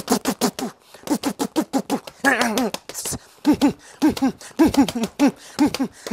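Rapid hand strikes on a leather wall bag, several sharp slaps a second, with short voiced grunts or exhalations in time with the blows.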